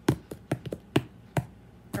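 An irregular run of sharp taps and clicks, about eight in two seconds, from hands handling something on a tabletop.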